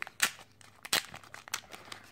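Thin plastic packaging bag crinkling in the hands, with a few sharp crackles.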